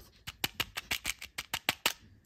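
A run of about a dozen quick, sharp clicks, roughly six a second, as hands work the plastic cap on a cardboard Lacasitos candy tube.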